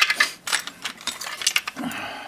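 Small parts of a disassembled Tokyo Marui M&P airsoft pistol clicking and clattering as they are handled on a bench mat: a sharp click at the start, another just after, then scattered light clicks.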